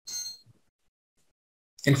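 A single short, high-pitched ding lasting under half a second.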